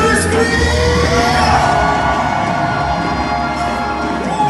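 Live gospel worship band and singers performing, with a long held sung note over the band, and the audience whooping and cheering.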